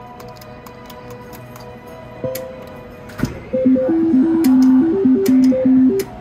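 Reel slot machine sounds: a quieter first half with faint steady electronic tones and a click or two, then from about halfway a loud electronic melody of short stepping beeps.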